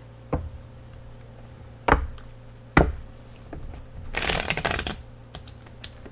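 A deck of tarot cards being shuffled by hand: three sharp knocks in the first three seconds, then a riffle of the cards lasting nearly a second, about four seconds in.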